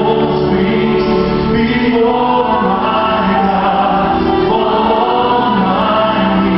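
Church choir singing a gospel worship song in many voices, steady and unbroken.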